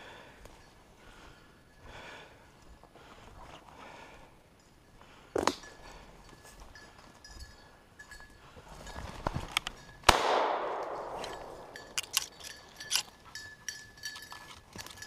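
A single shotgun shot from a Franchi Instinct SL about ten seconds in, fired at a flushing grouse, with a long echoing tail through the woods. Before it there is soft rustling of steps through brush, and light clinks follow it near the end.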